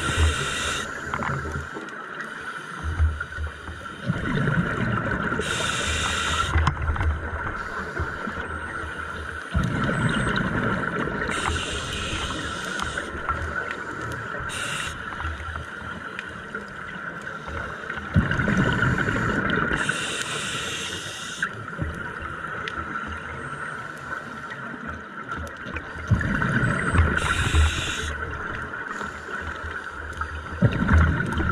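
Scuba diver breathing through a regulator underwater: short hissing inhales about every seven seconds, each alternating with a longer, lower bubbling exhale. A steady high hum runs underneath.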